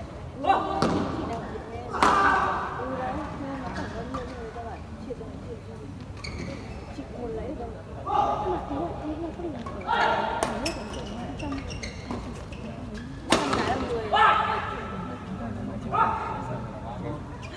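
Badminton rackets striking a shuttlecock during a doubles rally: about six sharp cracks at irregular intervals, echoing in a large sports hall, with voices between them.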